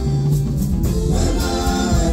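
Live Congolese rumba band playing, with several singers singing together into microphones over drum kit and backing instruments.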